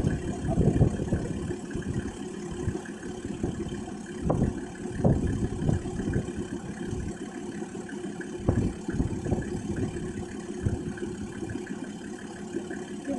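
Toyota LandCruiser Troop Carrier engine idling while bogged, with irregular low bubbling and gurgling from its exhaust pipe submerged in the puddle.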